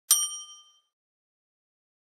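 A single notification-bell ding sound effect: one sudden strike with several ringing tones that fade out in under a second.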